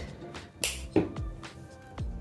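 Background music with a beat, including a sharp snap-like click a little past half a second in and a low drum thump at about one second.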